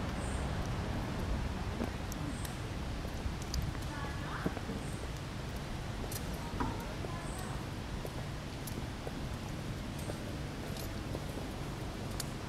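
Steady outdoor city background noise with a low traffic rumble and faint distant voices. A faint high chirp repeats about every two and a half seconds.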